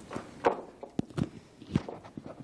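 Footsteps of a person walking across a hard floor: several separate, unevenly spaced steps.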